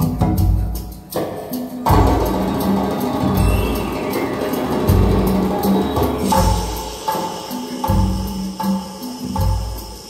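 Recorded music with percussion over a deep bass beat about once a second, played through a pair of Borresen C3 floor-standing loudspeakers.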